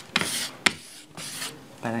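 A small pine wood block, loaded with mint and sky-blue chalk paint, rubbed over a wooden plank in two short scraping strokes with a sharp knock between them. This is paint being dragged on to give the plank a faux-distressed finish.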